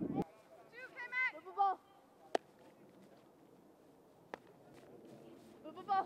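A high-pitched shouted call, then two sharp single cracks about two seconds apart, typical of a softball being struck or smacking into a glove. Near the end a voice starts shouting "three, three, three", calling the throw to third base.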